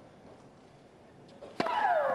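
Hushed stadium background, then about one and a half seconds in a tennis serve is struck with a sharp crack. The server's loud shriek follows at once, falling in pitch.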